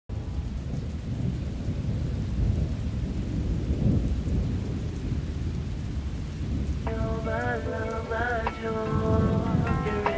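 Rain and thunder sound effect opening a song. About seven seconds in, a melodic line with small pitch bends enters over the rain.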